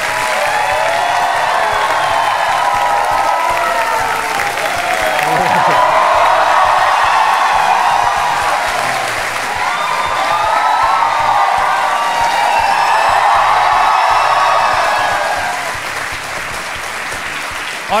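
A large studio audience applauding. The clapping swells twice and eases off near the end.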